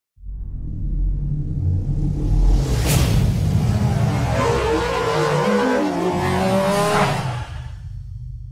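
Cinematic logo-intro sound design: a deep rumble that swells up, a sharp hit about three seconds in, then gliding electronic tones and a second hit near seven seconds before it fades out.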